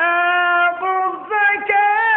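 A man's voice reciting the Quran in the melodic tajweed style. He holds long, drawn-out notes, with short breaks and pitch turns between phrases.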